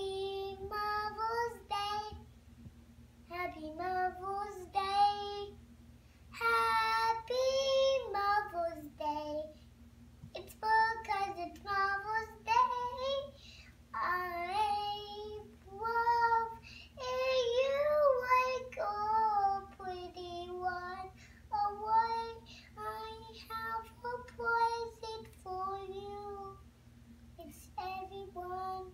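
A young girl singing a Mother's Day song solo and unaccompanied, in phrases of a few seconds with short breaths between them.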